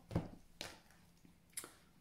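Three faint, brief rustles and taps of a deck of oracle cards being picked up from the table and handled in the hands.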